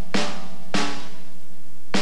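A drum struck three times in a slow beat, each hit ringing out, the third after a longer pause.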